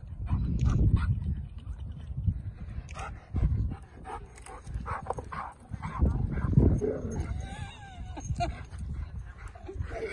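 Dogs giving short barks and whines, with a wavering whine about seven to eight seconds in, over an uneven low rumble.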